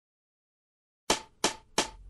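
Silence for about a second, then a rap backing beat comes in with three sharp percussive hits about a third of a second apart.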